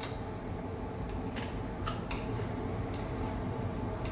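Faint, irregular clicks and crunches of people chewing raw bird's-eye chillies, over a steady low hum.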